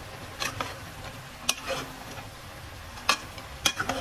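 A metal ladle scraping and knocking against a steel pot while chicken pieces are stirred, with several sharp clinks over a steady frying sizzle.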